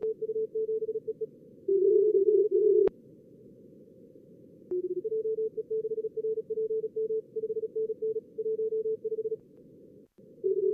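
Fast Morse code (CW) tones from simulated contest stations in a logger's practice mode, keyed in two slightly different pitches, over a steady hiss of simulated receiver noise. A louder, lower-pitched burst of code comes about two seconds in, then only hiss for about two seconds before keying resumes.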